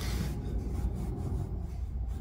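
Low, steady rubbing and handling noise close to the microphone, with no distinct knocks or tones.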